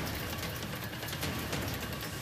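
Heavy downpour: a dense, steady hiss of rain with many sharp taps of drops striking, over quiet background music.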